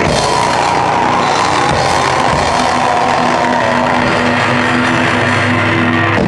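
A rock band playing loud and live, with no pause.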